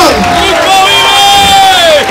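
A voice holding one long, high shout over crowd cheering, its pitch falling away at the end.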